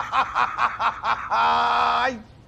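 A man laughing heartily in a quick run of 'ha's, about five a second, ending in one long drawn-out note near the end.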